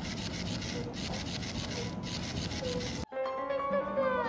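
Battery-powered flopping-fish cat toy running, its motor and flapping tail making a steady, rhythmic rasping. It stops abruptly about three seconds in, and background music begins.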